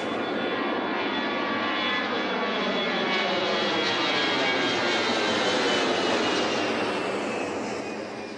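Twin-engine jet airliner climbing overhead, its engines running loud and steady with a whine that slides down in pitch as it passes over. The sound fades near the end.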